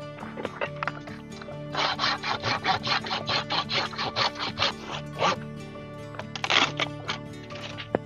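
A hand pruning saw cutting through a green palo verde branch in quick, even strokes, about five a second, for three to four seconds. A couple of brief rustling bursts follow as the cut branch is pulled out of the brush. Background music plays throughout.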